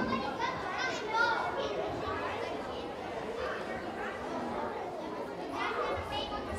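A group of children chattering and calling out over one another, many voices at once with no single clear speaker.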